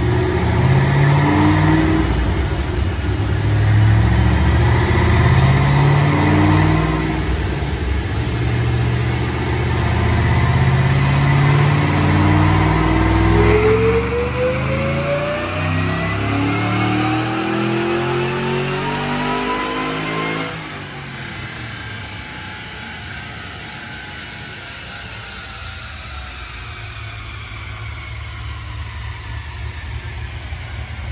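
2006 Mustang GT's Whipple-supercharged 4.6 L three-valve V8 making a dyno pull on a Dynojet chassis dyno. Engine pitch climbs and steps back down several times in the first seconds, then rises steadily in one long run to high rpm. About two-thirds of the way through it cuts off abruptly as the throttle closes, and the engine winds down more quietly with falling pitch.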